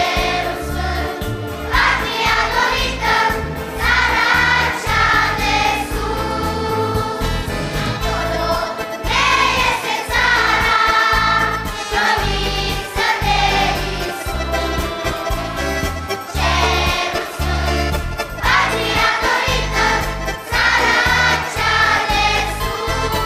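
A large children's choir singing a hymn in phrases a few seconds long over a steady instrumental accompaniment.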